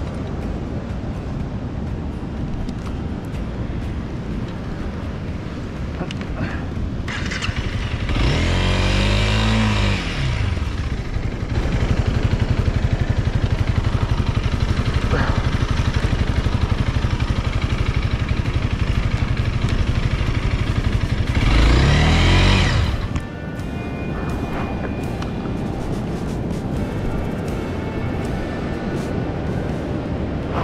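Honda CRF300L dirt bike's single-cylinder engine stuck in soft beach sand: revved hard and falling back about eight seconds in, then held steady under throttle for about ten seconds, revved once more and dropped away suddenly. Wind and surf noise throughout.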